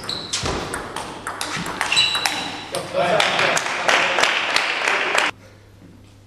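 Table tennis rally: the ball clicks sharply off paddles and table and shoes squeak on the court floor. The point ends in spectators applauding and shouting, which cuts off suddenly about five seconds in.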